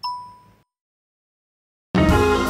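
A single bell-like ding, pitched around 1 kHz, that dies away within about half a second and leaves dead silence. Guitar music cuts in just before the end.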